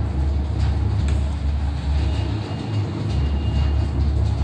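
A steady low rumble, like machinery or traffic, with a few faint clicks.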